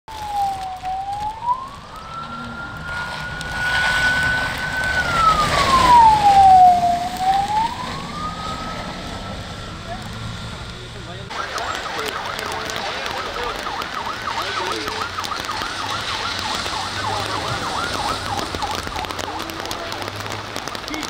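Warning siren on a rally course vehicle, a pickup with a roof light bar, wailing slowly up and down. About eleven seconds in, after an abrupt cut, a faster warbling siren pattern takes over, repeating several times a second.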